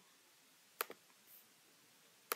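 A single computer mouse click a little under a second in, with a faint second tick right after it; otherwise near silence.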